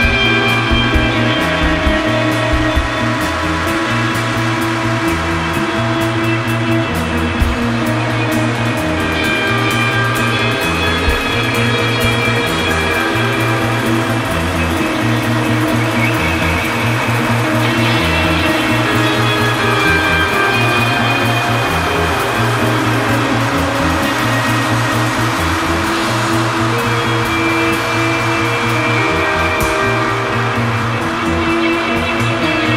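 Instrumental psychedelic space rock: a repeating bass riff runs under long held higher tones, with no vocals.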